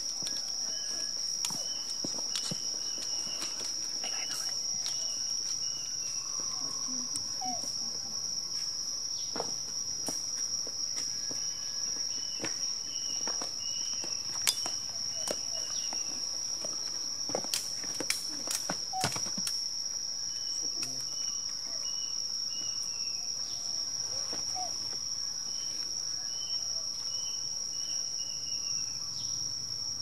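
Outdoor insect chorus: one insect's steady high-pitched buzz running without a break, with runs of five or six short chirps repeated every few seconds. A few sharp clicks stand out in the middle.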